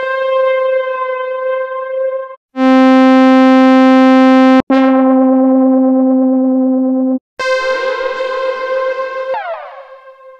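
Analog synthesizer one-shot samples played back one after another: four held notes of about two seconds each, on much the same pitch but each with a different tone. The last has a falling sweep in its overtones and fades out near the end.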